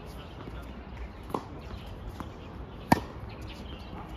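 Tennis rally with rackets hitting the ball: a fainter, distant racket hit about a third of the way in, a soft ball bounce a little after halfway, then a sharp, loud close racket hit about three seconds in.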